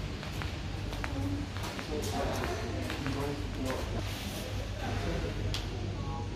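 Indistinct background voices in a mall over a steady low hum, with a few sharp clicks.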